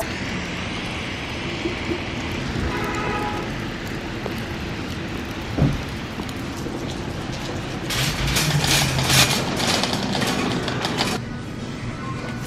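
Steady hiss of rain and wet-road traffic outdoors, with a single thump about halfway through. Near the end comes a louder few seconds of clattering and crackling that cuts off suddenly.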